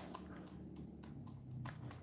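H'mông black chicken pecking grain from a plastic cup: a run of faint, irregular taps as its beak strikes the grain and the plastic.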